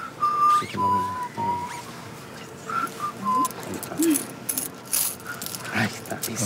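Whistling of a short tune: two brief falling phrases of three notes each, the first near the start and the second about three seconds in. A few light high clinks follow near the end.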